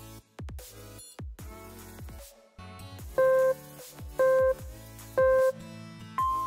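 Background electronic music with repeated falling sweeps. In the second half, three short beeps sound a second apart, a countdown timer marking the last seconds of a rest break.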